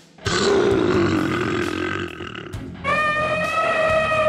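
Elephant calls: a rough, noisy call lasting about two seconds, then, after a short pause near the end, a long steady trumpet call.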